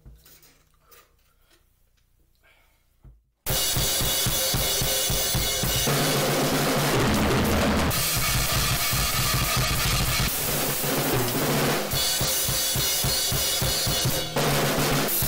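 Acoustic drum kit played fast and hard: bass drum, snare and crashing cymbals. It starts abruptly about three and a half seconds in, after a few faint taps, and keeps up a loud, dense beat that changes pattern a few times.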